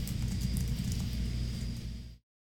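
Soundtrack of an online video playing back for a moment: a steady low rumble with faint high clicks, easing slightly near the end.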